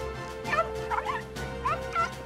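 A cartoon puppy yipping: four or five short, high calls that bend in pitch, over soft background music.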